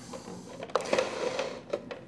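Handling noise of a black plastic Rain Bird sprinkler valve body being picked up and turned in the hands, with a couple of small clicks about a second in.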